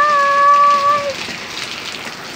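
Steady heavy rain falling. Over it, for about the first second, a woman calls out a long, high "Bye!"; after that only the rain is heard.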